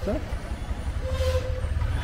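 Low, steady rumble of wind and road noise on a two-wheeler ride through a street, with one short steady horn toot a little after a second in.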